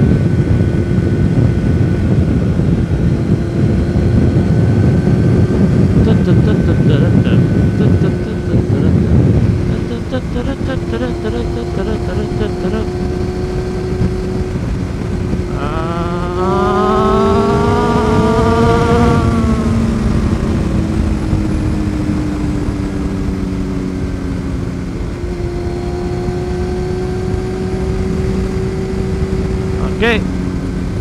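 Yamaha FZR600R inline-four sport-bike engine heard from the rider's helmet, with loud wind rush that eases after about nine seconds. About fifteen seconds in, the engine is opened up to overtake a car: its pitch climbs for a few seconds, then falls away and settles to a steady cruise.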